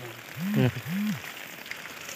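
Steady light rain falling, a soft even hiss. Over it, a man's voice makes two short sounds about half a second in.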